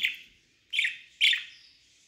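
Budgerigar giving two short chirps that fall in pitch, about half a second apart.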